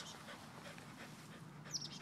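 A dog panting softly, with a short, high bird chirp near the end.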